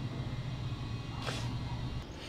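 A low, steady background rumble that stops near the end, with one short breathy hiss about a second and a quarter in.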